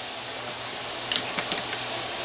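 Steady hiss of room tone with a few faint light clicks about halfway through, from a clear plastic drinking bottle being handled as a man drinks from it and lowers it.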